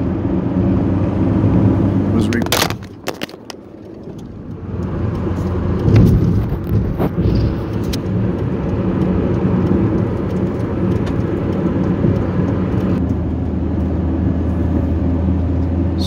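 Steady low rumble of a car driving, heard from inside the cabin. A cluster of sharp knocks comes about two and a half seconds in, then a short quieter spell, and another knock about six seconds in. The low hum grows stronger near the end.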